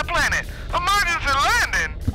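A high-pitched, squeaky voice speaking in quick rising and falling phrases that carry no recognisable words, over a steady low rumble.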